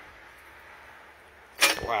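A faint, steady background hiss with no distinct mechanical strokes, then a man exclaiming "wow" near the end.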